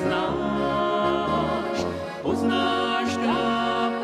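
Czech brass band (dechovka) playing a steady, slow dance tune, with held melody notes over a bass line that steps from note to note.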